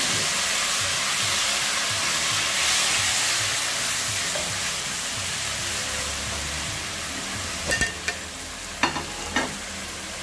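Chopped tomatoes sizzling in hot oil in a non-stick pan as a wooden spatula stirs them; the hiss is loudest at first, just after they go in, and slowly dies down. Near the end the spatula knocks against the pan a few times.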